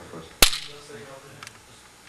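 A single sharp knock about half a second in, followed by faint, distant speech.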